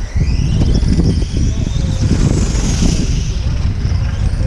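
Loud low rumble of wind buffeting the microphone, with the thin high whine of 1/8-scale electric RC on-road cars' motors rising and falling as they run the track.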